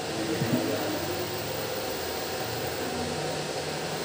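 A steady whir of a fan, with a couple of faint, brief tones over it.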